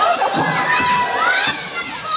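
A crowd of children shouting and cheering, many high voices whooping over one another.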